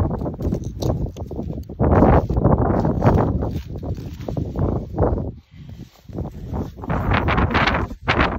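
Irregular rustling and scraping as a goat's cape is cut free around the head with a knife and the skin is handled and lifted off the carcass, with a couple of short lulls just past the middle.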